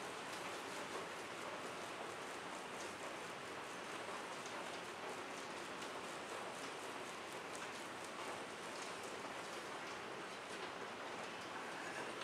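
A steady, even hiss with faint scattered ticks, unchanging throughout.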